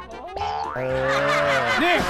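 Cartoon comedy sound effects added in the edit, over music: a rising whistle-like slide, then a busy jingle, with a springy boing starting near the end as a stamp is pressed onto a forehead.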